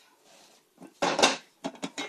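Cooking pot being handled and set down after the grease is drained: a short scraping clatter about a second in, then two sharp clicks.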